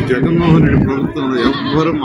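A man speaking loudly into close microphones, his voice rising and falling.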